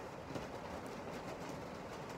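Steady background noise with a few faint, soft rustles.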